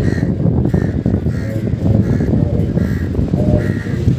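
Crows cawing over and over, short calls following each other every half second or so, over a loud steady low background noise.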